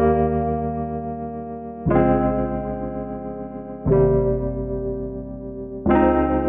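An electric-piano-style keys sample loop playing back, with a new sustained chord struck about every two seconds that rings and fades before the next.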